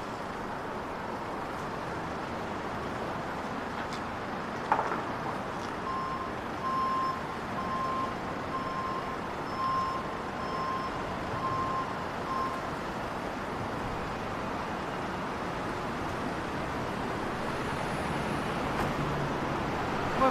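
Steady street traffic noise with a single sharp knock about five seconds in, then a run of about eight evenly spaced beeps from a vehicle's reversing alarm over the next six seconds.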